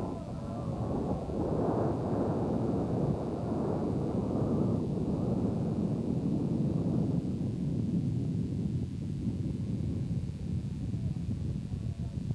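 Wind buffeting a camcorder's built-in microphone: a steady, gusting low rumble that swells about a second in and eases near the end.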